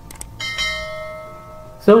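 Subscribe-button animation sound effect: a couple of quick mouse clicks, then a bell-notification chime that rings out and fades over about a second and a half.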